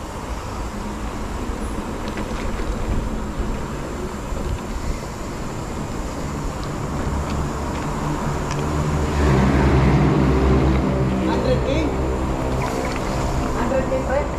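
Wind buffeting and tyre rolling noise picked up by an action camera on a mountain bike riding a dirt trail. A louder, steady humming drone joins about nine seconds in.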